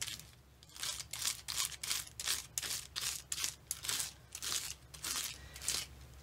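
Bristle die brush scrubbing over a metal cutting die and freshly die-cut glossy cardstock, a quick run of short, scratchy brushing strokes, about three or four a second, starting after a brief pause. It is pushing the tiny cut-out pieces out of the die.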